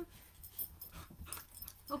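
Corgi puppy making faint, short, irregular noises while at play with his ball.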